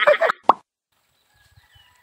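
A voice trails off, then a single short, hollow pop sounds about half a second in, followed by near silence.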